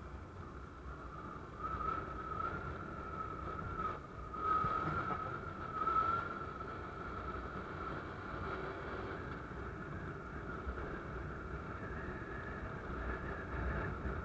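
Honda Wave 125 motorcycle engine running steadily while being ridden, a wavering whine over a low rumble of wind and road noise, swelling a little about four to six seconds in.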